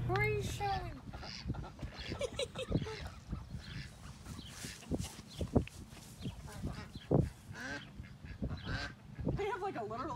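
Ducks and chickens calling in short, scattered quacks and squawks, with laughter in the first second.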